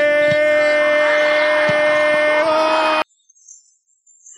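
A radio football commentator's long, held shout on one steady pitch, over a low steady drone, cut off abruptly about three seconds in.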